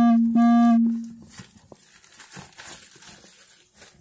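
Two held humming tones at the same steady pitch in the first second. After them comes faint crinkling of plastic shrink-wrap on a cardboard box as it is handled.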